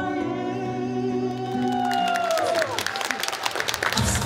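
A male singer holds a long sung note over instrumental backing, then lets it slide downward about two and a half seconds in as the song ends. Audience applause starts up over the close.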